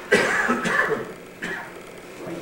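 A person coughing: a sudden burst right at the start that dies away within about a second, and a shorter, weaker one about a second and a half in.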